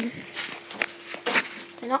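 Footsteps: three soft scuffs about half a second apart, over a faint steady hum.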